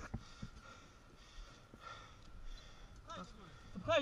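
A rider's faint breathing, with light rustling; a man's voice starts speaking near the end.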